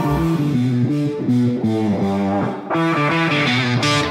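Background music: a plucked guitar melody of quick stepping notes over bass, growing fuller about three seconds in.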